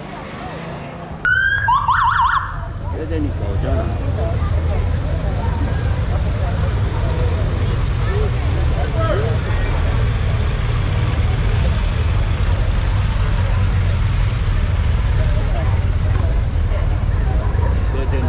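A police siren gives a few short up-and-down whoops about a second in. Then a steady low rumble of police motorcycle engines runs under crowd chatter.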